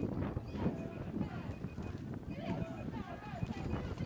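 Rough outdoor rumble with irregular knocks and rattles, and faint distant voices shouting a couple of times.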